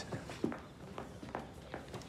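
A few light footsteps, about four steps spaced roughly half a second apart, as someone walks across a room.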